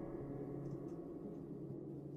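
Faint, dark ambient background music: a low steady drone with the fading ring of a gong-like tone.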